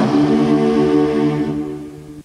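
Closing chord of a commercial jingle, sung by a group of voices and held steady for about two seconds before it cuts off.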